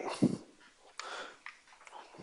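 A man's short, faint murmur just after the start, then a faint breath-like hiss about a second in.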